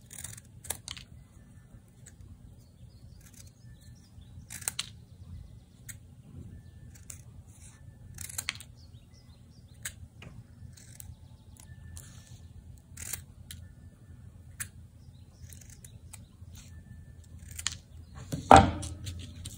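Scissors snipping through small pieces of folded paper: short, sharp, irregular snips every second or two, cutting out little stars.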